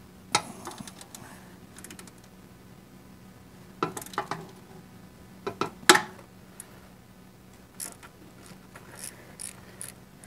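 Ratchet wrench working a very tight engine oil drain plug loose: scattered ratchet clicks and metal knocks, the loudest cluster about six seconds in, with a few small ticks near the end.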